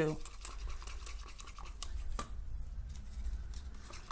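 Wooden craft stick stirring thick acrylic pouring paint in a small cup: a run of light, quick scraping strokes against the cup's wall, with one sharper click about two seconds in.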